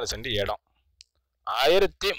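Speech only: a voice narrating, broken by about a second of silence in the middle.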